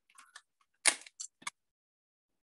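A paper envelope being handled and opened: a few short crinkles and clicks, the loudest just under a second in, with two smaller ones after it.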